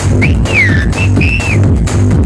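Techno played loud over a club sound system, with a steady bass-heavy beat. Over it run a few high whistle-like notes: a short rise, a falling glide, then a brief note and a held one.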